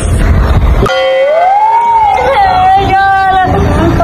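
A young boy crying aloud: about a second in, one long wail that rises and then holds steady. Before it there is a second of low rumbling noise.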